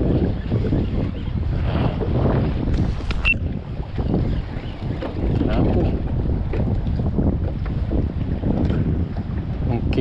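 Wind buffeting the microphone over open sea, with water moving around a kayak hull; a sharp click comes a little after three seconds.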